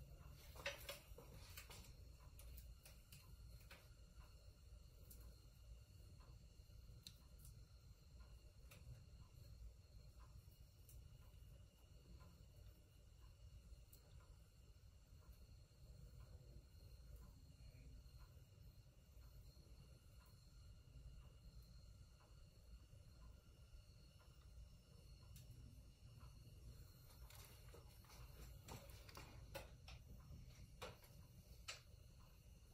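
Near silence: a faint low rumble of room tone with scattered faint ticks, a few more near the start and the end.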